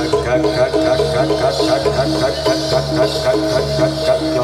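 Javanese gamelan music accompanying a jathilan performance: a steady loop of repeating pitched notes under a long held higher note.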